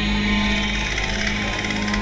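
Two amplified sitars playing: a steady low drone note held under a dense ringing of many higher strings, the low note breaking briefly about one and a half seconds in.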